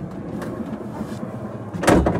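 Sliding side door of a Fiat Ducato-based camper van rolling open along its track, then a loud clunk near the end as it reaches its open stop.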